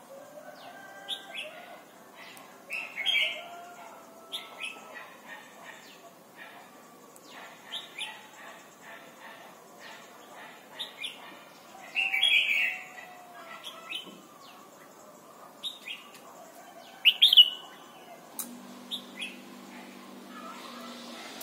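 Red-whiskered bulbul calling in short, bright chirps and brief song phrases every second or two, with louder bursts about three, twelve and seventeen seconds in.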